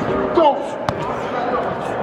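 Sharp thud of a hit on a standing foam tackling dummy a little under a second in, over shouting voices in a large indoor practice hall.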